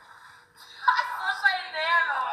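A person's voice speaking, starting about a second in after a short quiet stretch.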